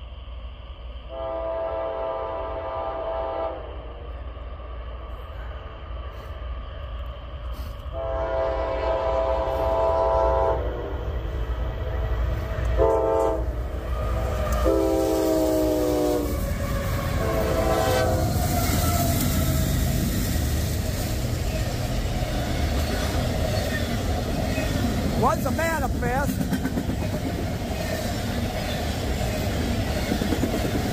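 CSX freight locomotive's horn sounding the grade-crossing signal: two long blasts, a short one, a long one that drops in pitch as the engine reaches the crossing, and a final short toot. Then the locomotive and freight cars rumble past, with a brief wavering squeal late on.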